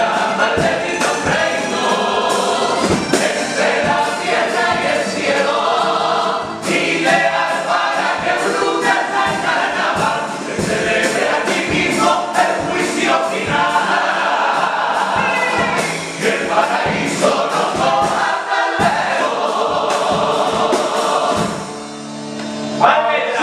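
Male carnival comparsa choir singing a pasodoble in several voices, with Spanish guitar accompaniment. The singing fades out near the end as the piece closes.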